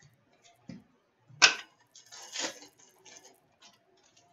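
Trading cards being handled and laid down on a glass countertop: a string of light clicks and card rustles. The sharpest is a crisp snap about a second and a half in, and a longer rustle comes a little past the middle.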